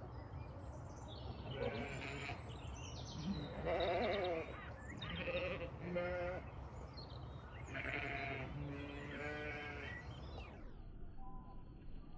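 Zwartbles ewes bleating: about six separate wavering calls, the loudest about four seconds in.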